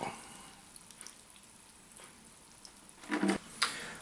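Faint dripping and trickling of liquid as a dripping mass of fermented elderflowers is lifted out of a bucket of fermenting elderflower champagne. A brief voice comes in a little after three seconds in.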